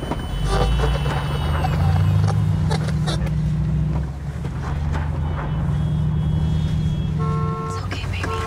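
Car engine running steadily, heard from inside the cabin as a low hum, with a few light knocks and a short tone shortly before the end.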